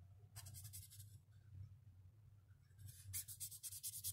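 Faint scratching of a felt-tip marker on paper as it colours in with rapid back-and-forth strokes. A short burst comes about a third of a second in, and a faster, steadier run of strokes starts near the end.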